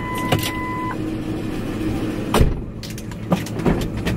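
Inside a car's cabin, a dashboard warning chime gives one steady beep of about a second over a low steady engine hum. A few knocks follow, the heaviest about two and a half seconds in.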